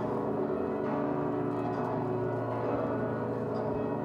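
Church bells ringing, their overlapping tones blending into a steady, sustained ring.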